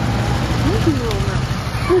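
Steady low street and traffic hum, with short snatches of a voice about halfway through.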